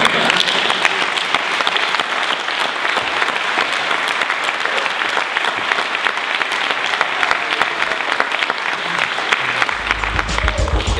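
Audience applauding steadily, the dense clapping of many hands.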